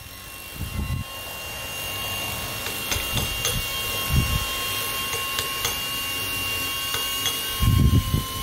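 Robotic milling spindle running on marble: a steady high whine over a hiss, with a few low thuds. It grows louder over the first couple of seconds.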